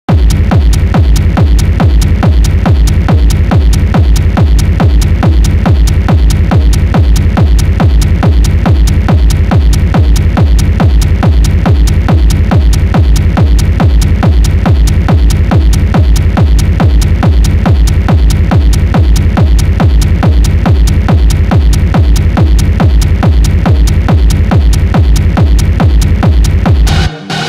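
Acid techno track playing, driven by a steady four-on-the-floor kick drum at about two beats a second over a heavy bass.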